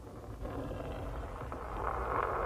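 Steel ball bearing rolling along the seam between a Lexus ES 300's body panels: a steady rolling sound that grows gradually louder.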